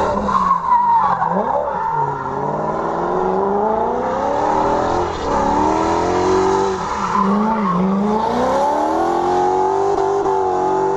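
V8-swapped BMW E36 drifting: the V8 revs up and drops back again and again as the throttle is worked, over the screech of the rear tyres spinning and sliding on concrete.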